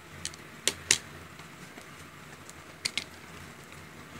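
Sharp clicks and taps from handling a compact eyeshadow palette and its box: three in the first second, then two in quick succession about three seconds in.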